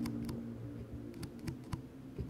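Metal spoon-tipped ear pick tapping on a small piece of glass close to the microphone: four or five sharp, light clicks at uneven intervals over a low steady hum.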